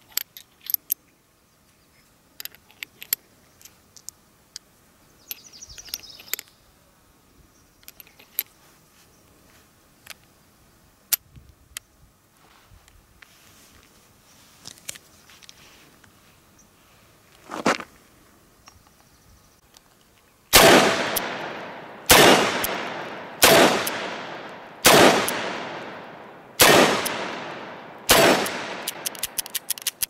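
Six shots from a Dan Wesson 715 .357 Magnum revolver firing .38 Special rounds, about one and a half seconds apart, each trailing off in a long echo. Before them, light metallic clicks of cartridges being slid into the cylinder and the cylinder being closed.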